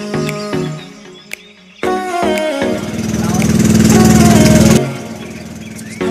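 Background music with a loud mechanical din in the middle: the outrigger boat's engine running with a fast even beat, swelling for about two seconds and then cutting off suddenly.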